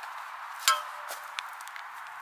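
A garden spade swung like a bat hits a slug, its steel blade giving one sharp clack with a short metallic ring about two-thirds of a second in. A much fainter tap follows.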